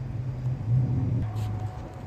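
A car engine idling, a steady low rumble that swells in the middle and eases off near the end.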